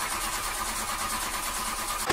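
Car engine being cranked by its starter motor, a steady rapid churning that does not catch.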